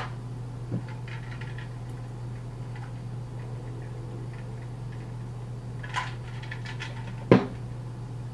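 A steady low hum with a few scattered sharp clicks, the loudest about seven seconds in.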